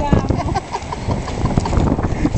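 Wind buffeting the microphone with a steady low rumble, and footsteps on gravel.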